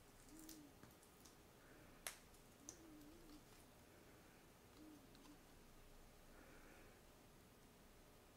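Near silence, broken by a few small clicks and ticks from hands handling paper and peeling the backing off foam adhesive squares, the sharpest about two seconds in.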